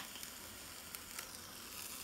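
Steak sizzling faintly between the hot plates of a closed electric sandwich press, with a light even crackle.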